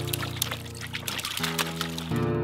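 Background music with held chords over water and filled water balloons pouring from a plastic bucket into a plastic bin, with many small splashes and knocks as the balloons tumble in.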